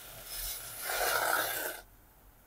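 Dry rice and roasted moong dal grains being stirred in a steel pressure cooker: a soft rasping rustle that swells twice and cuts off abruptly near the end.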